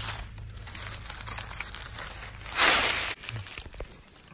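Dry leaf litter rustling and crinkling as a hand works among the leaves to pick a mushroom. One louder rustle comes about two and a half seconds in.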